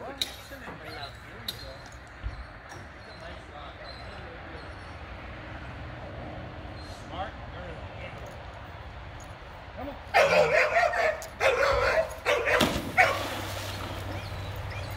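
A dog barks several times, loud and repeated, near the end, followed by a short rushing splash as the dock-diving dog lands in the pool.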